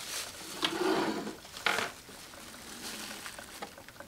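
Sublimation ink bottle draining into the cyan tank of an Epson ET-3760 EcoTank printer, a faint bubbling that is the sign the ink is flowing in and the tank is filling. It is louder with a couple of sharper pops in the first two seconds, then fades.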